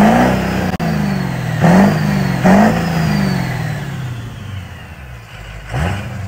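Ford 6.0 Powerstroke turbo-diesel V8, built to about 700 hp, being revved hard twice in quick succession. The revs then fall away slowly, with a faint high whistle sinking along with them, before a fresh rev near the end.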